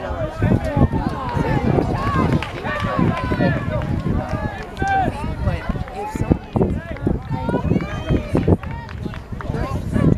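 Indistinct voices calling and shouting across an outdoor soccer field, several overlapping throughout, over irregular low thumps.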